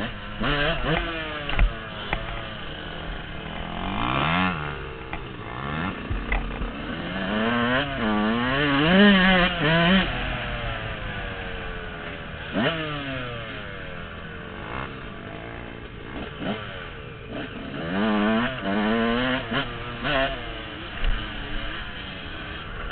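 Yamaha dirt bike engine revving up and dropping back again and again while being ridden, with the biggest surges about four, eight to ten and eighteen seconds in. A few sharp knocks come through from the bike over bumps.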